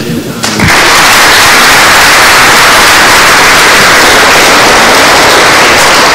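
Audience applauding: a dense, steady clapping that begins about half a second in.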